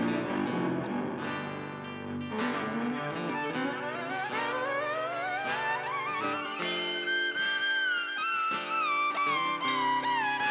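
Live band playing an instrumental passage on archtop electric guitar, acoustic guitar, upright bass and drums. A long sliding lead note rises with vibrato over several seconds, holds, then falls away near the end.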